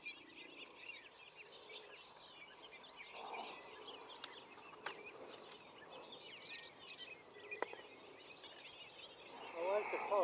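Many small birds singing and chirping over faint steady outdoor background noise, with a couple of faint sharp clicks about five and seven and a half seconds in.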